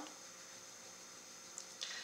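Faint steady room hiss with no distinct sound standing out.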